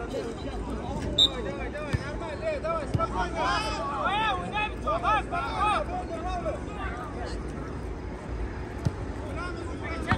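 Several voices calling and shouting over a murmur of crowd chatter, busiest in the middle seconds, with a few sharp thuds of a football being kicked.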